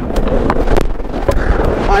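Ice hockey play close to the net: skates scraping the ice and sticks clacking, with a few sharp knocks, picked up by a goalie's body-worn microphone.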